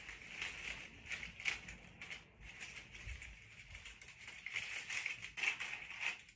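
Dry flower stems and papery dried leaves rustling and crackling in the hands as a bouquet is handled and rearranged, a steady run of small crisp crackles.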